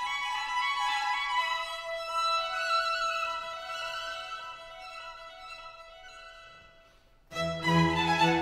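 Instrumental background music, a melody of long held notes, which fades almost to silence around seven seconds in; a louder, fuller passage with deep bass notes comes in just after.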